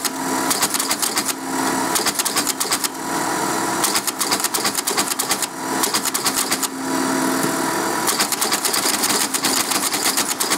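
Electromechanical cipher teleprinter with code wheels running, its mechanism clattering in fast, rapid clicks. The clattering alternates with smoother stretches of steady motor whirring, and the dense clicking returns for the last couple of seconds.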